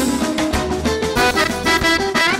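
Live Balkan party band music led by an accordion, playing over a steady beat.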